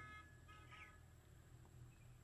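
Near silence: room tone, with a faint, brief squeak from a marker drawing a line on paper about half a second in.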